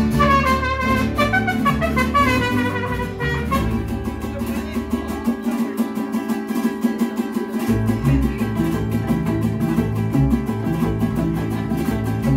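Live mariachi band playing: violins and trumpets carry the melody for the first few seconds, over strummed vihuela and guitar and the guitarrón's bass. After that the strumming keeps a steady rhythm, and the bass drops out for about two seconds midway before coming back in.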